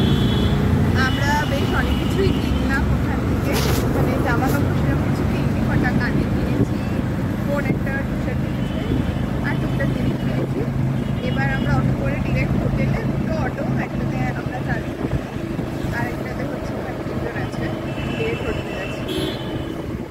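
A vehicle's engine running steadily while moving, with wind noise on the microphone. Short high tones sound now and then over it.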